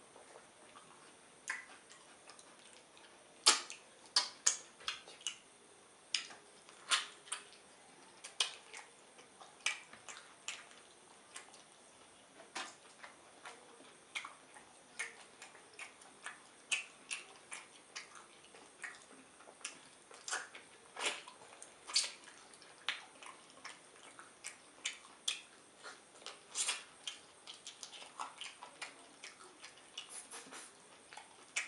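Close-miked wet mouth sounds of eating pounded yam fufu with slimy ogbono-okra soup: a string of short, sharp smacks and clicks, about one or two a second, with the loudest about three and a half seconds in.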